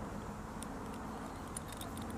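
A few faint metal clicks from a rope grab being handled as its bolt is unscrewed, over a steady low background rumble.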